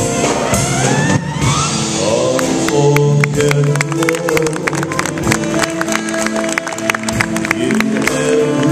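Live jazz band playing a slow ballad, with tenor saxophone, electric guitar and piano. A rising run sounds near the start, then a steady beat of crisp ticks runs through the middle.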